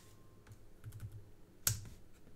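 Computer keyboard typing: a few soft key clicks, then one sharper, louder keystroke near the end.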